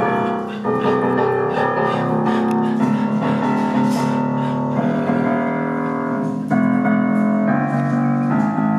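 Piano playing slow, held chords that change every second or two.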